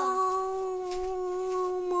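A child's voice holding one long sung note, steady in pitch, with no accompaniment.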